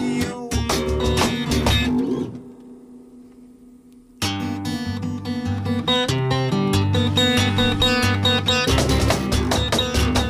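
A guitar-led band song. About two seconds in the music falls away to a quiet pause, then comes back in suddenly about two seconds later, and the low end fills out again near the end.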